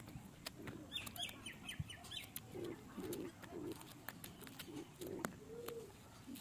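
Birdsong: a quick run of high chirps about a second in, then low cooing calls of a dove repeated a few times, with scattered soft clicks close by.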